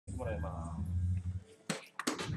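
Darts-bar background: a low murmur of voices, which drops away just past halfway, then a sharp click and another right at the end.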